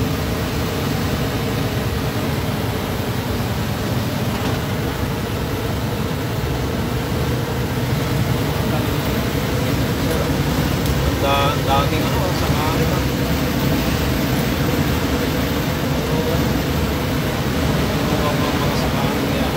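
Steady engine and road noise heard from inside a lorry cab while driving along a highway. A brief voice is heard about eleven seconds in.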